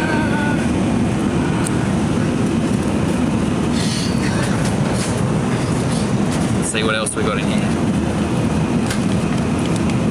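Steady drone of a small airliner's engines in flight, heard from inside the cabin.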